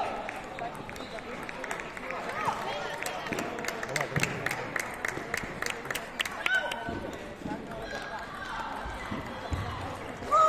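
Table tennis balls clicking off bats and the table in a hall, with a quick run of sharp clicks, about five a second, from a few seconds in to past the middle.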